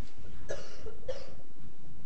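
A person coughing twice, about half a second apart, over steady room noise.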